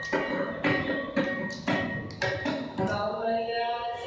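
Carnatic ensemble: mridangam strokes ringing out about twice a second, then from about three seconds in a held, sliding melodic line takes over.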